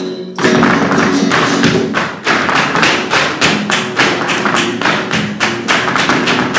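Flamenco footwork (zapateado): the dancer's heeled shoes striking the stage floor in a quick run of strikes, which resume after a short break right at the start. Flamenco guitar plays underneath, with hand-clapping (palmas).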